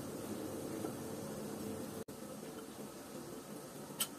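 Faint steady hiss with a low hum, cutting out briefly about two seconds in.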